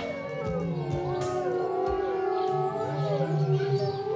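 Several animals howling together in long, wavering, overlapping howls, over background music.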